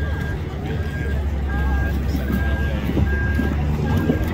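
A vehicle's backup alarm beeping steadily, one short beep about every 0.8 seconds, over crowd chatter and a low engine rumble.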